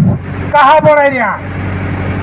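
A man's voice speaking through a microphone and loudspeaker system: one short phrase, then a pause. A steady low hum runs underneath.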